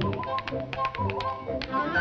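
Tap shoes striking a stage floor in a quick run of taps during a dance number, over an orchestral film score.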